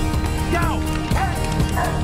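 A dog barking three times, about two-thirds of a second apart, over music.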